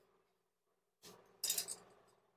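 Faint handling noise, then a short, bright clink of small hard parts about a second and a half in, as a motorcycle fuel injector is worked loose with a hand tool.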